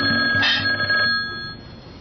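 Green push-button desk telephone ringing once, steady high tones lasting about a second and a half before stopping, as the handset is reached for.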